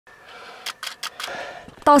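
Four faint, quick clicks within about half a second over a low hiss, then a voice starts speaking just before the end.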